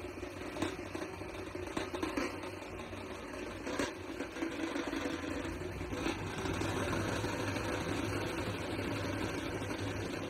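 A vehicle engine running steadily under the noise of a crowd, with a few short knocks.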